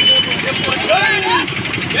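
A group of men shouting protest slogans in chorus, over a steady low rumble.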